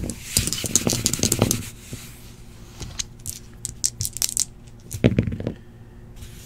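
Computer keyboard keys clicking, then a pair of dice clattering as they are rolled onto a desk mat, with a short burst of clatter about five seconds in.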